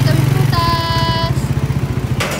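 A motorcycle engine idling close by with a rapid, even throb that fades near the end. About half a second in, a steady pitched tone sounds for under a second.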